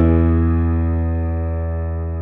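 Kurzweil Academy digital piano holding an E major chord with a low bass note, struck just before and sustaining as it slowly fades.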